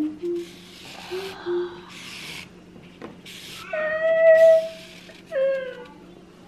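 A voice making short low hums, then hissing noises, then a long, level, high cry about four seconds in and a shorter falling cry near the end.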